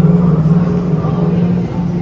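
A steady, loud low hum on one pitch, with a brief dip near the end.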